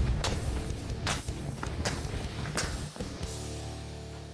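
A blade slashing through hanging filled fabric bags, four quick strokes about three quarters of a second apart, over background music with a steady guitar bed.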